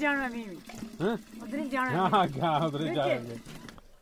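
Speech only: people talking over each other, in words that the transcript did not catch.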